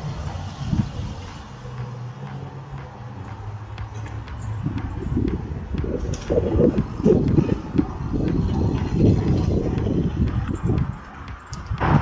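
Mountain bike riding over a rough dirt singletrack: a steady low rumble with scattered clicks and rattles. From about four and a half seconds in it turns to louder, irregular jolts and knocks as the bike bumps over rougher ground.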